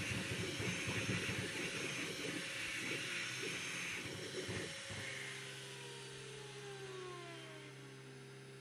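3D printer running a high-speed print, its part-cooling fan hissing over busy motor noise. About five seconds in this gives way to a quieter, steadier hum with several whines falling in pitch.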